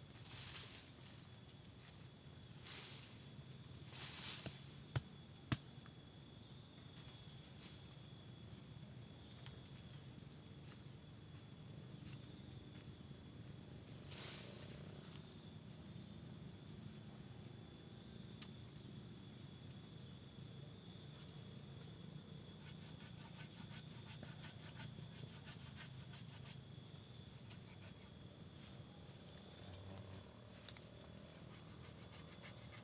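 Steady high-pitched insect chorus, with intermittent scraping and scuffing of soil as the roots of a pule tree are dug out by hand. Two sharp clicks about five seconds in, and a patch of rapid ticking in the last third.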